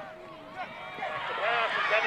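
Several people's voices shouting and cheering over one another, growing louder about halfway through.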